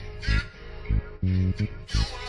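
A boom bap hip-hop beat playing: heavy kick drum and deep bass hits under a sampled melodic loop with a plucked-string sound.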